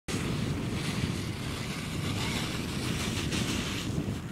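Wind buffeting the camera microphone: a steady low rumble with a hiss over it.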